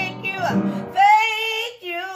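A woman singing a gospel praise phrase to her own piano chords; from about a second in, the piano drops out and she holds one long sung note alone.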